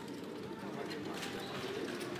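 Roulette table ambience: a steady murmur of background voices with scattered light clicks of casino chips being handled.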